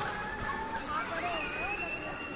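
Several young children's high voices calling and chattering at once, with one child's long, high squeal starting a little over a second in and held steady.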